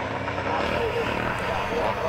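Engines of a pack of twin-shock classic motocross bikes running together through a turn, heard from a distance as one steady, blended drone.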